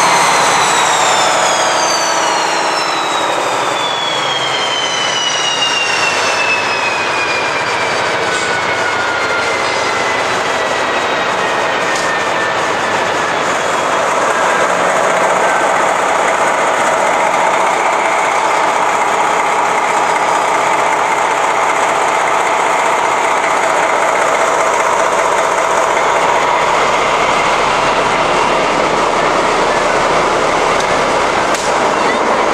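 A DB class 218 diesel locomotive heard up close: a high whine of several tones glides steadily downward and fades over about twelve seconds as a rotating part winds down, over a loud, steady machine running noise.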